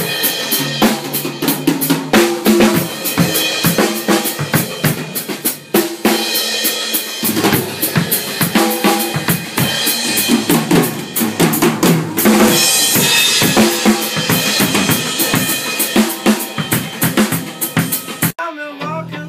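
A drum kit being played in a steady groove of kick, snare and cymbal strikes, with a denser cymbal wash about twelve seconds in.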